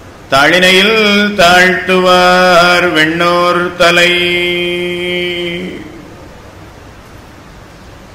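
A man chanting Sanskrit devotional verses in a melodic recitation tone. The last syllable is held on one steady note for nearly two seconds and fades out. A short pause follows for the last couple of seconds.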